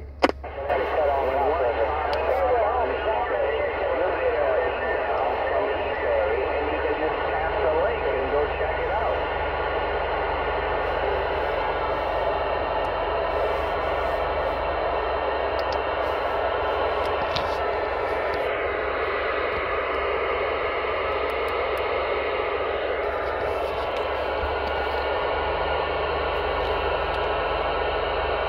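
CB radio speaker on lower-sideband receive: a steady rush of band static, with faint, garbled distant voices from skip in the first few seconds, over a low hum.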